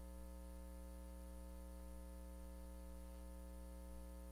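Steady electrical mains hum with a faint buzz on the sound feed, unchanging, with no other sound over it.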